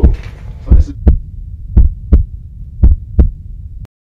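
Heartbeat sound effect: paired lub-dub thumps about once a second over a low hum, cutting off abruptly just before the end.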